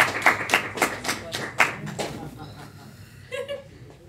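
A person clapping their hands, about eight claps at roughly four a second, fading out after two seconds.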